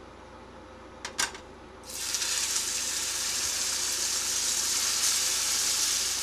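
Raw chicken breasts laid into a hot frying pan, the oil sizzling loudly and steadily. There is a short click about a second in, and the sizzle starts sharply just before two seconds.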